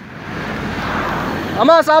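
A road vehicle passing close by, its noise swelling and fading over about a second and a half, followed near the end by a loud called-out voice.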